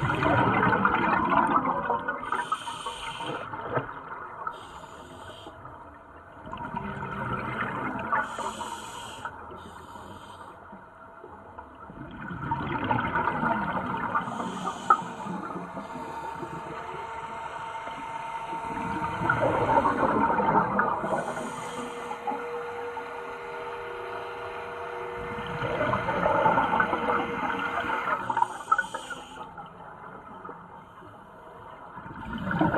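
Scuba diver breathing on a regulator underwater: a rush of exhaled bubbles in surges about every six or seven seconds, with shorter hisses between them.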